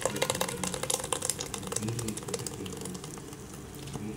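A spoon pressing and stirring cooked tomato pulp through a fine mesh strainer: wet squelching with quick scraping clicks, busiest in the first two seconds and thinning after. This is the straining step of homemade tomato ketchup.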